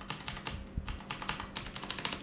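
Fingers typing rapidly on an HP GK320 mechanical gaming keyboard: a quick run of many sharp key clicks. The keyboard is noisy enough to be picked up by a microphone, a drawback for streaming.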